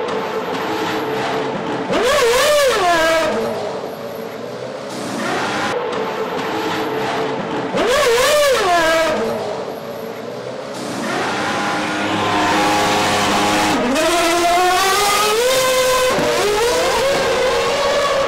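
Formula One cars' 2.4-litre V8 engines in the pit lane, the pitch swooping down and back up about two seconds in and again about eight seconds in. From about eleven seconds a higher, steadier engine note carries on, rising in pitch near the end.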